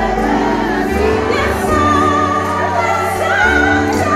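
A hymn sung by a woman soloist on a microphone leading a large group of voices, over a live band with sustained bass notes.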